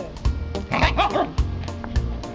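Siberian husky giving a short yipping call that rises and falls twice, about a second in, over background music with a steady beat.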